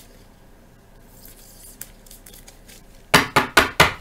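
Four quick, sharp taps of a rigid plastic card holder against the desk near the end, settling a freshly sleeved card into the holder.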